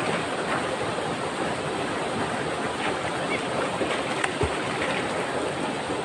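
Steady rushing of river water pouring over a broad rock cascade into a pool. One brief low thump comes a little past the middle.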